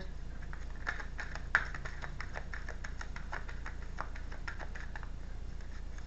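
Tarot cards being shuffled by hand: a run of light, quick clicks and flicks as the cards slide and tap against each other, with one sharper snap about a second and a half in. A steady low hum runs underneath.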